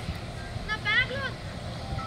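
A brief high-pitched voice call about a second in, over a low steady rumble.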